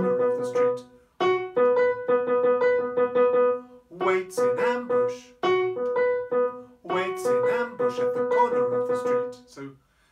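Piano sound from a Nord Stage 3 stage keyboard playing three short phrases of chords, one upper note held or repeated through each phrase, with brief pauses between them.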